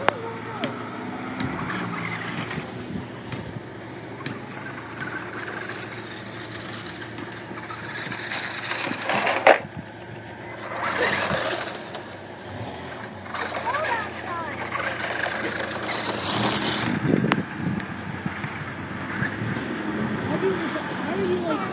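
Electric Traxxas radio-controlled truck driving over gravel in short bursts of throttle, its motor whining and its tyres scattering stones. A sharp knock comes about nine and a half seconds in.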